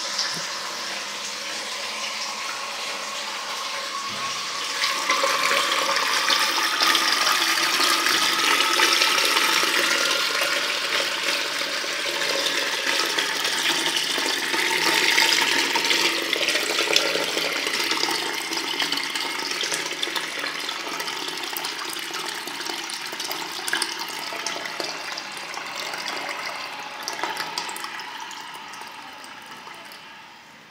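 Toilet cistern refilling through its float valve after a flush: a steady rush of water that grows louder about five seconds in. A tone rises slowly in pitch as the cistern fills, and the water fades away near the end as the valve closes.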